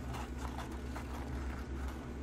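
Close-miked chewing: wet mouth clicks and smacks, several a second and unevenly spaced, over a steady low electrical hum.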